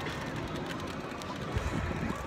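Wind buffeting a phone's microphone: a steady hiss with low rumbling gusts, a little stronger about one and a half seconds in.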